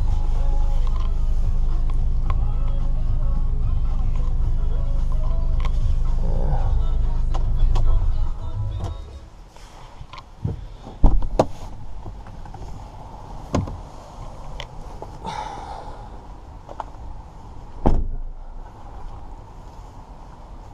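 Mercedes V250 diesel engine idling with a steady low hum, then shut off about eight seconds in. After that come a few sharp knocks and clicks, the loudest soon after the engine stops, and a thump near the end, as of the van's door being handled and closed.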